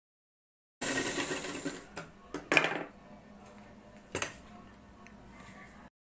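Pioneer sewing machine stitching for about a second, then several sharp mechanical clicks and knocks as the machine and cloth are handled, the loudest about two and a half seconds in. The sound starts and stops abruptly.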